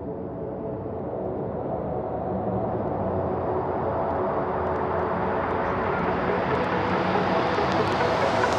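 Hardwave electronic music: a held synth chord under a noisy swell that grows steadily louder and brighter, a build-up without drums.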